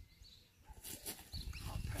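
Quiet outdoor ambience in a pause: irregular low rumbling, a short rustle just under a second in, and a few faint bird calls. A man's voice starts near the end.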